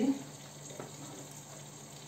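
Chicken pieces and onions sizzling steadily in a pot, a soft even frying hiss, with one light click a little under a second in.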